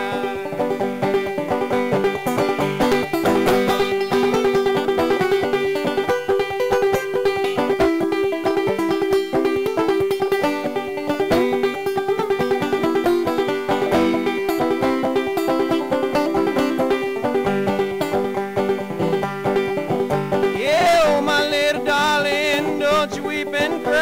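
Banjo played solo in a fast instrumental break, quick plucked notes over a steady ringing drone note.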